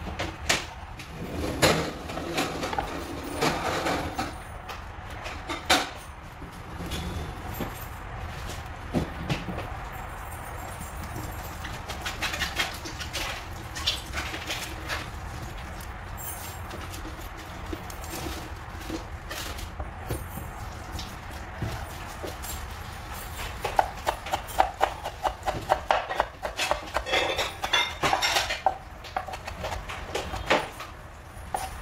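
Kitchen knife chopping fresh parsley on a wooden cutting board: a quick, even run of knife taps starts a few seconds before the end. Before that come scattered knocks and rustles from handling the herbs on the board.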